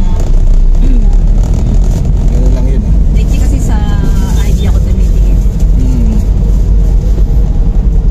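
Steady low rumble of a car's engine and tyres heard inside the cabin while driving, with a few brief, faint voices over it.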